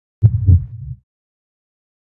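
Heartbeat sound effect: two low thumps in quick succession, a lub-dub, near the start.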